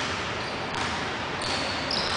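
A basketball dribbled on a hardwood gym floor, with a few faint knocks over a steady hiss. Short high-pitched sneaker squeaks start near the end as the two players bump on the post.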